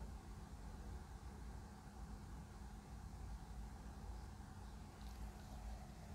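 Faint steady low hum of room tone, with no distinct sounds.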